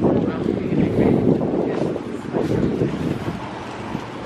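Wind buffeting the handheld camera's microphone in uneven gusts, a loud low rumble that surges and eases.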